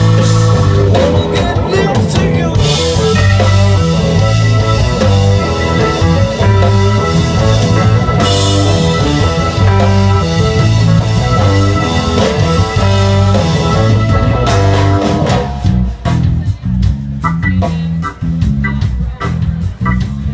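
Live band playing rock music: electric guitar, bass and drum kit, loud. About fifteen seconds in the band drops to a sparser, quieter passage.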